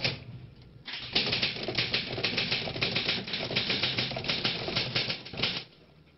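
A rapid, irregular run of sharp clicks, starting about a second in and stopping shortly before the end.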